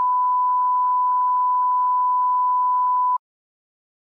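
Broadcast test tone played over a colour-bar 'technical difficulties' card: a single steady, high-pitched beep held at one pitch, which cuts off suddenly about three seconds in.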